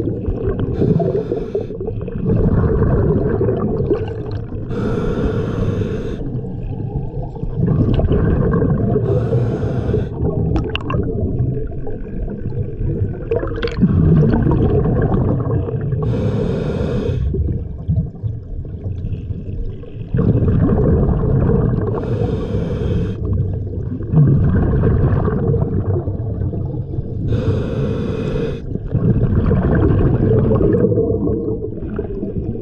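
Scuba diver breathing through a regulator underwater: each exhale releases a hissing gush of bubbles every five to seven seconds, over a steady low rumble of water against the camera housing.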